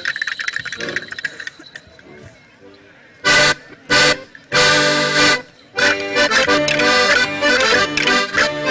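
Accordion folk-dance music: one tune fades out, and after a short pause three loud chords are played, two short and one held, before a lively rhythmic dance tune starts a little before the end.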